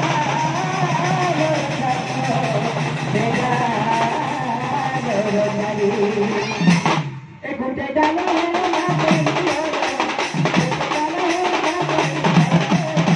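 Live folk music from a stage troupe: several barrel drums played together with a wavering melody line over them. The sound briefly drops out about seven seconds in.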